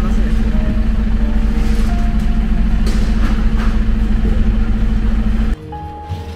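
Truck engine idling close by, a loud, steady low drone with one constant hum. It stops abruptly near the end.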